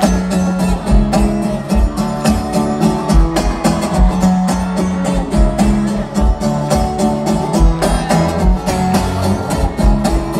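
Live concert music over a large PA: an amplified acoustic guitar strummed in a steady rhythm over a regular low beat, with no singing.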